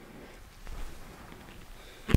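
A few faint footsteps of court shoes on a badminton court floor over quiet room tone, slightly louder about half a second in.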